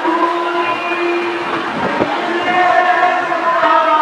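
Devotional kirtan music: long, held harmonium notes with little singing, the reed tones sustained and shifting pitch every second or two.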